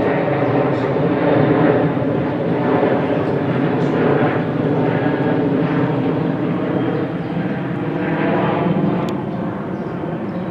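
A loud, steady engine drone with an even low hum that eases off slightly near the end.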